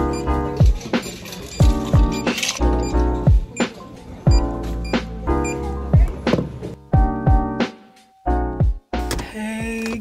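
Background music: repeated chords over a beat with deep, falling bass hits, breaking off briefly near the end.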